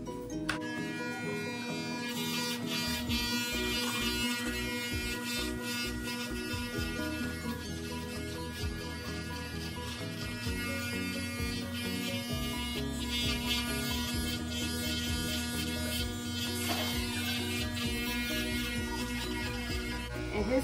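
Background music with a beat over the steady buzz of electric hair clippers running as they cut short hair.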